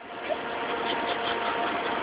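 A motor running steadily: an even hum with a few faint steady tones, slowly growing a little louder.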